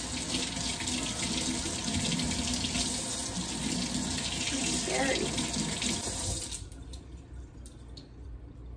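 Kitchen sink faucet running steadily, water splashing into the sink, then shut off about six and a half seconds in.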